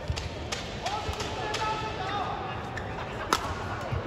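Badminton rally: several sharp cracks of rackets striking the shuttlecock, the loudest a little after three seconds in. Court shoes squeak on the mat in between, over steady crowd noise in a large hall.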